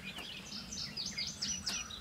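Birds chirping outdoors: a busy run of short, high chirps and whistled notes, some sliding up or down in pitch.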